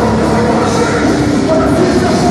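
Heavy rock band playing live at high volume: distorted guitars, bass and drums blurring into a dense, steady wall of sound.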